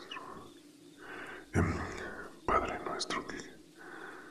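A voice whispering a prayer in short, breathy phrases with pauses between them.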